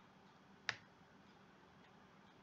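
Near silence, broken once by a single sharp computer-mouse click about two-thirds of a second in.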